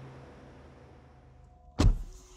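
Faint hiss of near-still room tone, then near the end a single loud, sharp thud of a car door shutting.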